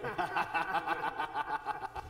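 Laughter in a meeting room: a run of quick, rapidly repeated laughing pulses lasting the whole two seconds, louder than the speech around it.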